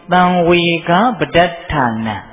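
A Buddhist monk's voice preaching a Burmese dhamma talk in an intoned delivery, with several syllables held at a level pitch.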